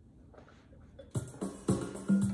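A violin starts playing a beginner tune just past a second in, with short, separately bowed low notes, after a moment of near quiet.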